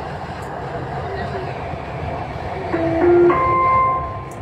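Dubai Metro train running along the elevated track, heard from inside the car as a steady rumble. Near the end, a short run of held electronic tones steps up in pitch and is louder than the rumble.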